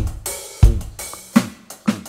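Roland V-Drums electronic drum kit playing a groove: two bass drum kicks about half a second apart at the start, each on the first beat of a group of three, then hi-hat and snare strokes from the sticks.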